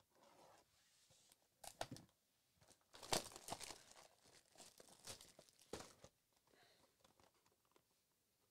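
Plastic shrink wrap on a sealed trading-card hobby box being slit with a knife and peeled off, in short bursts of tearing and crinkling plastic.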